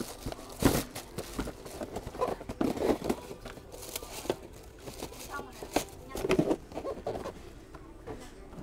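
Tissue paper crinkling and a cardboard shoebox being handled as sneakers are packed into it, with scattered short knocks and rustles of box and paper.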